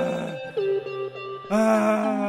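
Electronic organ playing sustained chords over a steady low drone, with a fuller new chord coming in about a second and a half in.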